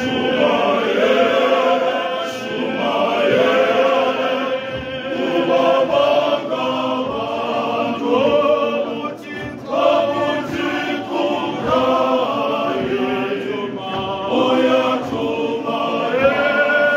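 Male voice choir singing unaccompanied, several voices in harmony moving from chord to chord without a break.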